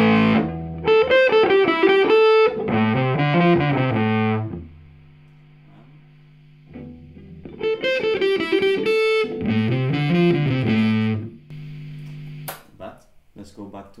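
Electric guitar through the overdriven lead channel of a Fender J.A.M. amplifier, playing a melodic phrase, letting a note ring more quietly for about two seconds, then playing the phrase again. A sharp click comes near the end.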